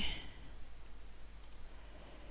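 A few faint computer mouse clicks over a low steady hiss.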